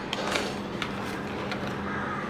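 Cardstock inserts of a handmade mini album being flipped and handled by hand: a few faint paper taps and rustles over a steady low hum.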